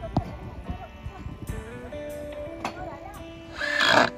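Background music with held, stepping notes over scattered short knocks. Just before the end comes a brief, loud rushing burst.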